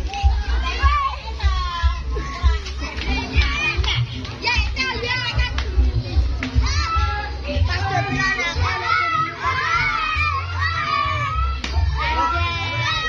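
A crowd of children chattering and shouting, many high voices overlapping, busier in the second half, over music with a heavy bass underneath.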